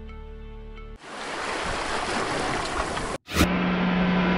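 Soundtrack: held musical tones give way abruptly about a second in to a loud, steady rushing noise. The noise cuts off near the end, and after a click a low held drone begins.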